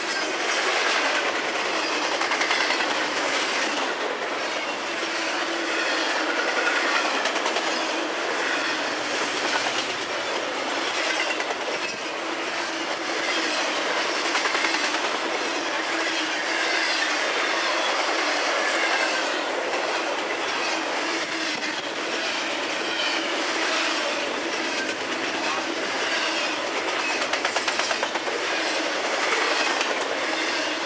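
Double-stack intermodal freight cars rolling past at speed: a steady, loud rush of steel wheels on rail, swelling and easing slightly as the cars go by.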